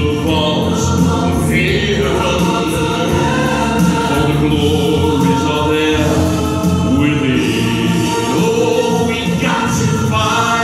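Man singing a musical-theatre ballad solo into a handheld microphone, amplified through a PA speaker, over a backing track with choir-like backing voices.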